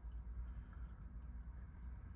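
Faint, steady low rumble of background noise, with no distinct event.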